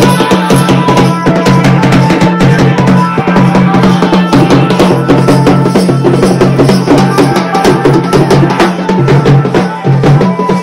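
Loud wedding procession band music: an electronic keyboard melody over steady drumming and a held low bass note.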